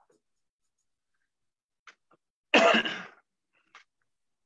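A person coughs once, a single loud burst about two and a half seconds in, with a few faint clicks around it.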